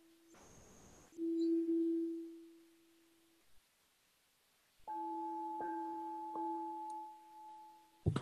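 Crystal singing bowl ringing with a steady pure tone that fades out about two and a half seconds in. After a pause of about two seconds, a second ring with a higher overtone sounds for about two seconds and fades near the end.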